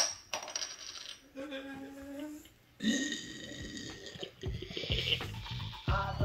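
A metal bottle cap lands with a sharp clink and a short high ring at the very start, followed by a few seconds of music with held notes.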